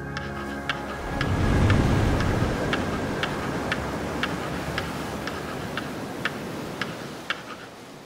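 Sound-effect ticking, about three even ticks a second, of the kind that goes with a rolling number counter. Underneath is a rush of noise that swells about a second in and slowly fades.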